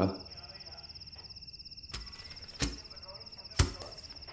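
Crickets chirping steadily in a high, rapid pulse, with three sharp knocks in the second half, the last one the loudest.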